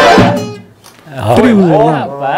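A forró band of accordion, zabumba drum and acoustic guitar ends a song on a last chord that rings and dies away within about half a second. After a short lull a voice calls out with a long falling pitch.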